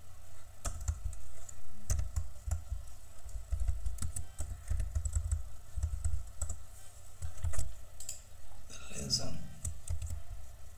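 Typing on a computer keyboard: irregular keystrokes and clicks while a line of code is edited.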